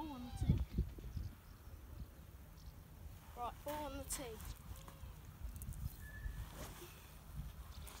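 Quiet outdoor background with a steady low rumble, broken by a few short spoken words; no club strike.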